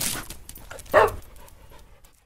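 Dog sound effect in a logo sting: a noisy rush, then a single short bark about a second in that trails off into fading breathy noise.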